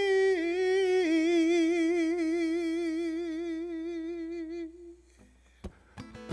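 A man singing one long, unaccompanied held note with an even vibrato. The note steps down slightly about a second in and fades out just before the end, followed by a single brief knock.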